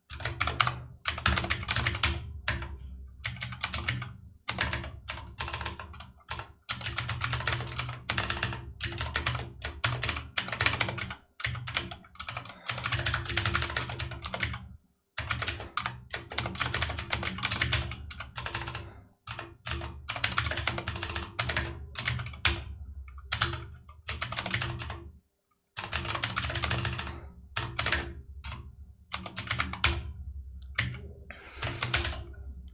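Computer keyboard typing in rapid bursts of keystrokes, with short pauses of under a second between bursts.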